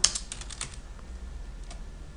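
Computer keyboard typing: a quick run of keystrokes in the first second or so, then a couple of single clicks.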